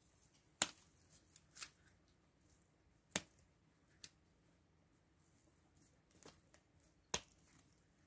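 Small hand snippers cutting spent black-eyed pea stems: about half a dozen faint, sharp snips at irregular intervals, three louder than the rest.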